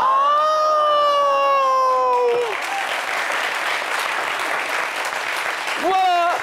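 Studio audience letting out one long drawn-out shout that slowly falls in pitch, then breaking into applause and clapping for the rest.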